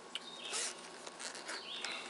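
A bird chirps twice, short high notes near the start and near the end, over faint clicks and a brief rustle from hands handling a small glass sample bottle.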